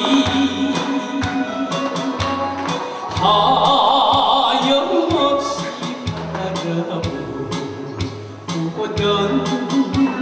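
Man singing into a microphone over a recorded backing track with a regular drum beat and bass line.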